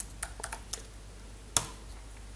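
Computer keyboard typing: a few scattered keystrokes in the first second, then one louder click about a second and a half in, entering a search.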